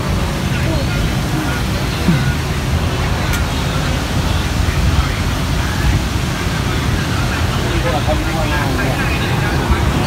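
Outdoor street ambience: a steady low rumble of road traffic with faint, indistinct voices in the background.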